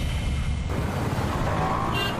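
Dramatic TV background score with a dense low drone; its upper layer cuts away abruptly about two-thirds of a second in.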